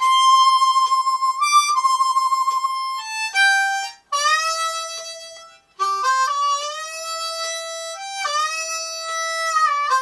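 Diatonic harmonica in F played cross harp in the key of C, a single-note country melody slowed to about 70 beats per minute. It opens on a long held note that wavers for a moment, then moves through shorter draw notes, some of them scooped up into pitch from below.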